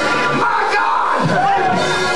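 A preacher's voice through a microphone, calling out in long, gliding pitched phrases over church music, with congregation voices around it.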